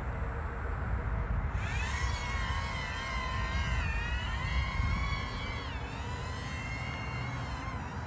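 Kai Deng K130 mini egg quadcopter's small motors whining in flight, the whine coming in about a second and a half in and its pitch wavering and dipping as the throttle changes, over a low wind rumble on the microphone.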